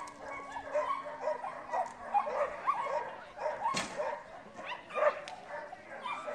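Dog barks and yips: many short barks scattered throughout, with one sharper, louder sound nearly four seconds in.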